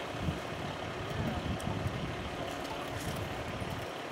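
Steady low rumble of idling vehicle engines and street noise, with a few faint ticks.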